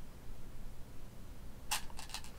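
Quiet small-room tone with a faint low hum, broken near the end by a brief soft hiss.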